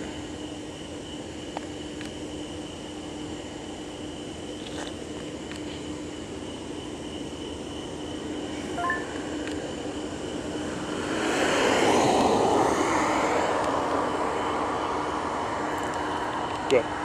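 A vehicle passing on the road: its noise swells from about eleven seconds in, is loudest a second later and slowly fades, over a steady background hum. A short beep sounds about nine seconds in.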